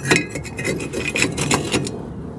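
Metal exhaust baffle being pushed and worked into the end of a quad's muffler: a run of scraping and sharp metal-on-metal clicks that stops near the end. The cleaned baffle is being refitted after being brushed free of soot and carbon.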